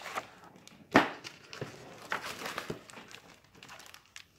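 Picture book being handled and moved, its pages rustling, with a sharp tap about a second in and a few lighter clicks after.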